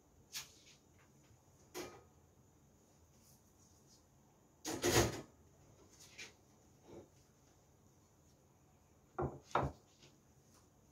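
A few scattered light knocks and clatters, the loudest about halfway through; near the end two quick knocks as a ceramic plate is set down on a wooden cutting board.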